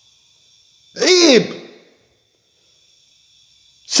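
A man's voice: one short exclamation, falling in pitch, about a second in, set between pauses in his talk.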